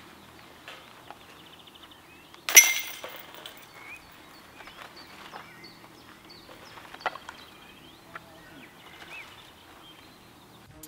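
One sharp metallic clank about two and a half seconds in, ringing briefly, as a flying disc strikes a disc golf basket's chains and cage, with a lighter click later. Small birds chirp throughout.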